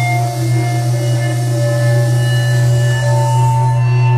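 Live experimental electronic synthesizer music: a loud, steady low drone under several held higher tones that fade in and out at different pitches.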